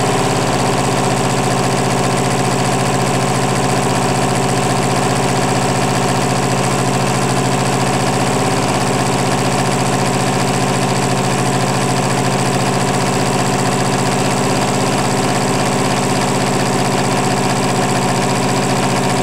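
A small cordless-drill DC motor, fed from a battery charger, spinning a Buhler printer motor as a generator. It runs with a steady whine made of several held tones that never changes or stops, so the charger has not cut out from the motor drawing too many amps.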